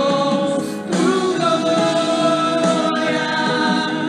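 Christian worship song: voices singing long held notes, with a short break about a second in.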